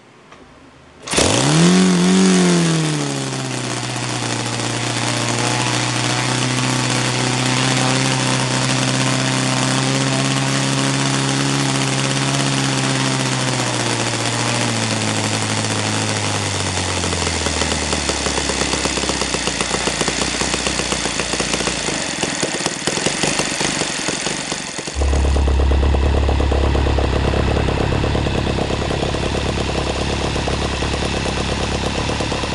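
OS FT-120 Gemini four-stroke flat-twin model aircraft engine turning a propeller on a test bench: it bursts into life about a second in, revs up briefly and settles to a steady run. Its pitch sinks slowly in the middle as it slows, and near the end the sound shifts abruptly to a louder, lower-pitched beat.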